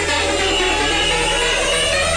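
Electronic dance music from a live DJ set in a breakdown: a held synth chord over a steady low bass drone, with no kick drum, and a sweep starting to rise near the end.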